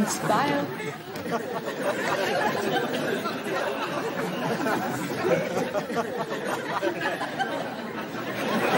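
Overlapping chatter of many voices at once, a steady murmur with no single clear speaker, after one brief voice right at the start.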